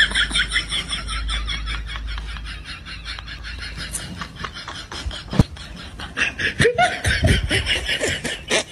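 A person laughing: a long run of quick, rhythmic, breathy laughs. A single sharp click stands out about five and a half seconds in.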